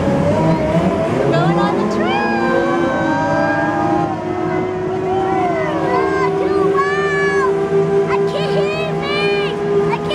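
Open-air park tram pulling away, its motor whine rising in pitch over the first couple of seconds and then holding steady, with voices over it.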